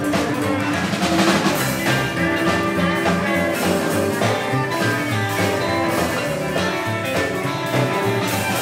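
Live rockabilly band playing an instrumental break between verses: electric guitar lead over drums, with no singing.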